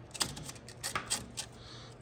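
A quick run of light clicks and rattles as a snowmobile rear torsion spring and its plastic bushing are handled and fitted onto the suspension pivot shaft.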